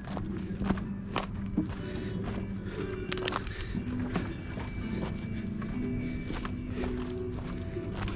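Footsteps of a person walking on a dirt trail littered with dry sticks and wood chips, as irregular light crunches, with music playing underneath.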